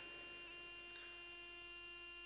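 Faint, steady electrical hum: several unchanging tones stacked from low to high, the lowest one the strongest.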